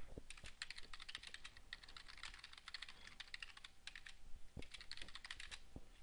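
Typing on a computer keyboard: faint, quick key clicks, with short pauses between bursts of keystrokes.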